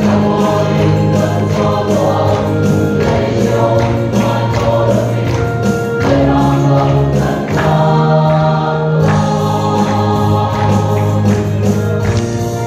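A group of voices singing a gospel song together, with a regular beat underneath.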